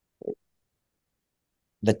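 Near silence, as on a noise-suppressed call, broken by one very short, low blip about a quarter second in. A man starts speaking again near the end.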